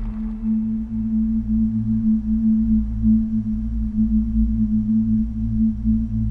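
Background score: one low drone note held steady, with a deeper hum beneath it.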